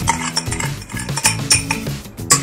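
A metal spoon scrapes and taps against a drinking glass as sugar is poured into a steel saucepan, making several light clinks. Background music plays.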